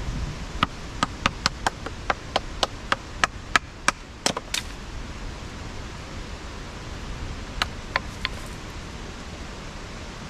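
Hatchet blade knocking into a stick of kindling on a wooden stump as it is split: about a dozen quick, sharp knocks at roughly three a second, then a pause of a few seconds and three more.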